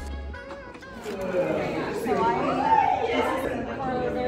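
Voices chattering in a large hall, with music ending in the first half second.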